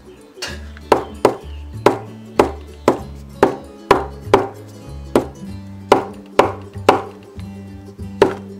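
Dauber-topped bottle of distress paint tapped down again and again onto a small craft card, a sharp tap about twice a second, over background music.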